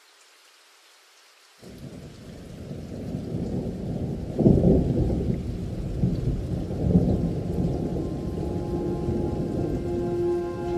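A faint hiss of rain, then a sudden, long rolling rumble of thunder over the downpour. It comes in about one and a half seconds in and swells twice to its loudest before settling into a steady rumble.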